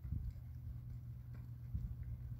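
Hoofbeats of a horse moving over sand arena footing: a few soft, low thuds, one near the start and a pair near the end.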